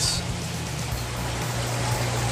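Steady trickling and running water from the aquarium's circulation, with a low, even hum underneath.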